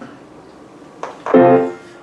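A grand piano sounded once, a little over a second in, ringing briefly and fading out.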